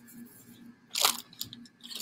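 Clear plastic bag crinkling in gloved hands: one short, sharp rustle about a second in, among a few faint ticks of handling.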